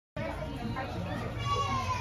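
A group of children chattering and calling out, cutting in suddenly just after the start. Near the end one child's high voice rises above the rest, falling in pitch.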